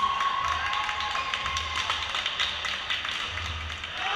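Badminton play in an echoing sports hall: a run of sharp taps and knocks from racket hits and footwork, with a long, high, steady tone through the first two seconds.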